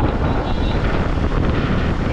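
Steady wind rushing over a helmet-mounted microphone on a moving motorcycle, with the bike's engine and road noise running underneath.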